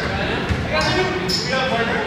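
A basketball bouncing once on a hardwood gym floor about half a second in, amid players calling out in a large gym hall.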